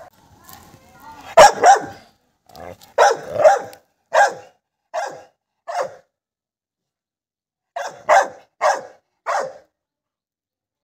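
Pit bull barking in short single barks: a pair about a second and a half in, a run of five through the middle, a pause, then four more near the end.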